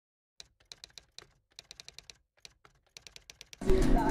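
Faint typing on a computer keyboard: irregular runs of light keystroke clicks. Just before the end, loud voices and music cut in.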